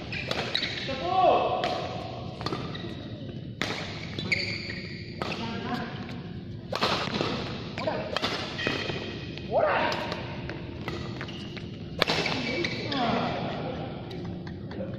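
Badminton rackets striking a shuttlecock in a fast doubles rally, sharp cracks at irregular intervals that include an overhead smash, with shoes squeaking on the court mat in between. The sounds echo around a large hall.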